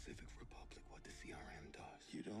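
Faint, quiet male dialogue from a TV drama playing in the background, with low music under it.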